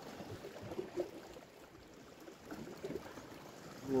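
Faint, uneven wash of sea water against rocks, with a few small irregular knocks.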